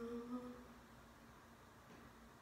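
A woman hums one short note with her mouth closed, lasting under a second. After it there is only faint room tone with a thin steady low hum.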